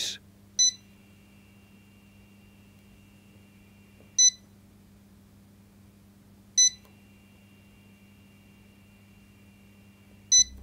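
Digital microwave oven's keypad beeping three times, short high beeps a few seconds apart. Between the beeps a faint steady high-pitched hiss comes from the oven while its timer runs without heating. The owner believes the control relay is held magnetically stuck off by the strong magnet beside it.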